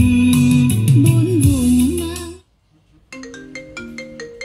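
Song music played through a Technics stereo system ends about two and a half seconds in. After a brief silence a smartphone ringtone of short, bell-like notes starts: an incoming call.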